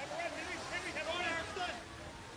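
Faint, distant voices shouting, for most of the first second and a half, over a low outdoor hiss.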